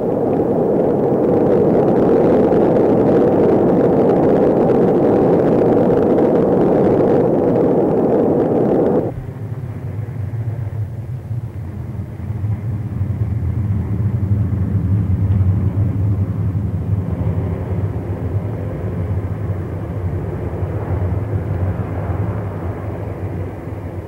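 Atlas-Centaur rocket at liftoff: a loud, even roar that cuts off abruptly about nine seconds in. A deeper, more distant rumble follows; it swells and then slowly fades near the end.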